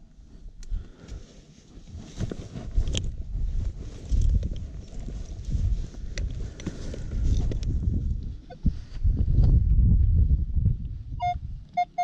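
A small hand spade digging into dry, crumbly field soil: irregular scrapes, crunches and clicks as the blade cuts and earth is turned. Near the end the metal detector gives a few short, quick beeps as its coil passes over the hole, signalling the metal target.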